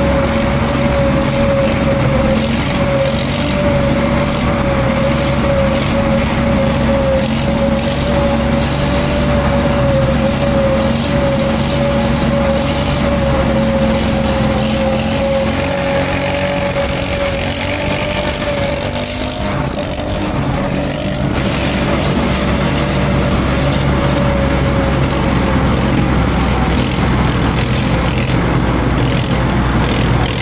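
Steady engine and road noise heard from inside a car travelling at speed, with a constant slightly wavering engine drone held at one pitch; the sound shifts briefly about two-thirds of the way through.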